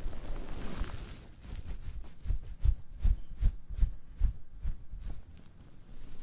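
Soapy, lathered sponge squeezed and rubbed directly on a microphone: wet squishing with a run of soft low thuds, two or three a second, from about two seconds in.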